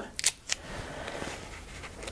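A couple of short clicks as a roll of masking tape is handled, then a faint, steady rasp of masking tape being pulled off the roll.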